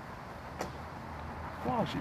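Steady outdoor background noise with a faint click about half a second in; a man starts speaking near the end.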